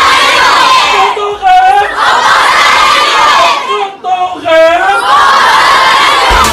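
A crowd of schoolchildren shouting together in loud bursts, a chant led by a single voice. The lone voice calls out twice, about a second in and again past four seconds, and the children shout back each time.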